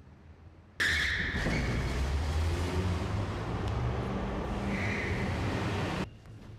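City traffic noise: a steady rumble of engines under a wash of road noise, starting abruptly about a second in and cutting off sharply at the end.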